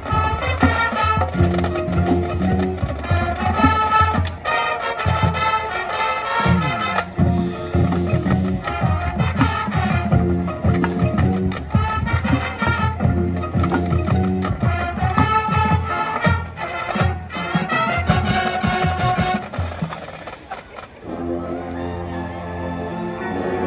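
High school marching band playing its field show: winds over a steady drum and mallet-percussion pulse in a loud, rhythmic passage. Near the end the full sound drops away to a softer, held passage.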